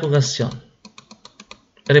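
A man's speech trails off, then comes a quick run of about ten small clicks from a computer keyboard over about a second, as slide animations are stepped through.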